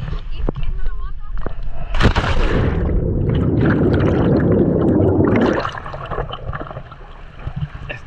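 A plunge into deep water: a sharp splash about two seconds in, then a dense, muffled rush of bubbles heard with the microphone underwater for about three and a half seconds, dropping off suddenly.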